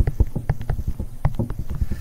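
Pen stylus tapping and scratching on a tablet while handwriting, heard as a quick, irregular run of sharp clicks, several a second.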